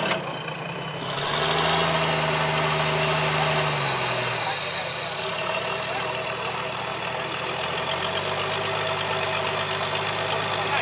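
The modified Toyota FJ40 crawler's engine revs up for a couple of seconds with its front tyre against a rock, then drops back to a lower, steady run. A high whine over it rises, holds and then slowly sinks.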